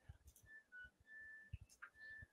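Washing machine's end-of-cycle tune: a faint melody of a few short electronic beeps at different pitches, signalling that the wash has finished.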